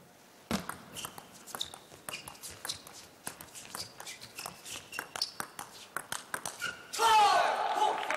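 A table tennis rally: the ball clicks in a quick, irregular series off bats and table, starting about half a second in. Near the end a loud burst of voices rises as the point ends.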